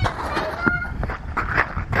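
Children's footsteps running on gravel, a quick run of crunching steps about four or five a second. A brief high-pitched child's call about half a second in.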